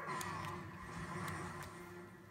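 Faint handling of a sticker book: sheets of stickers being turned and held, with a few light ticks over a low steady hum.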